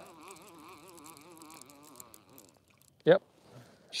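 Conventional fishing reel being cranked to bring in line, a faint wavering whine over the first couple of seconds. A brief vocal sound about three seconds in.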